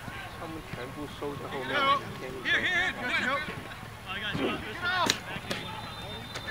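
Players calling and shouting at a distance across a soccer field, in short bursts. About five seconds in comes one sharp knock of the ball being kicked.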